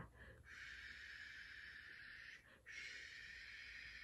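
A woman makes two long, soft breathy hisses with her mouth, a 'shhh' that imitates the wind whispering. There is a short break between them.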